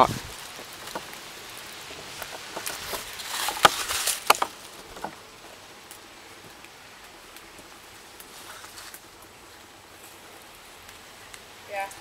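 An old wooden door being pulled open: a few seconds of rattling and handling noise with two sharp knocks, then only faint background.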